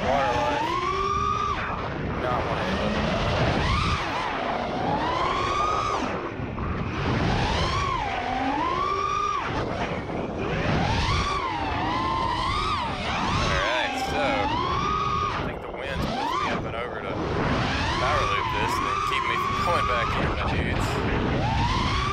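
FPV freestyle quadcopter's brushless motors and propellers whining, the pitch swooping up and down over and over as the throttle is worked, with a low rumble of wind underneath.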